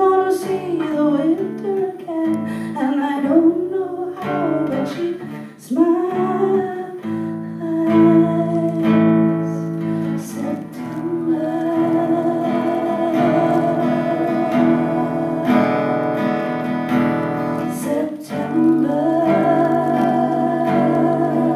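Live acoustic guitar strummed, with a woman singing.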